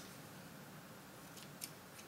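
Scissors cutting tulle ribbon: a few faint, short snips, one at the start and two close together near the end.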